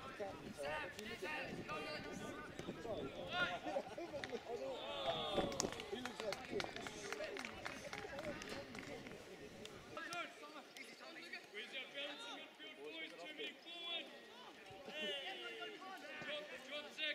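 Several voices shouting and calling out across a football pitch during play, none clear enough to make out. A low rumble under the voices cuts off abruptly about ten seconds in.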